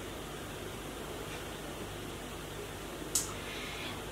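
Steady low hiss of room tone with no speech, and one brief soft hiss about three seconds in.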